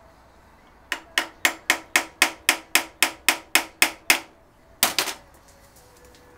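Sharp metal-on-metal taps from a small tool worked against the throttle spindle and butterfly screw of a Weber DCOE carburettor. There is a quick, even run of about thirteen taps at roughly four a second, then a short pause and two more near the end.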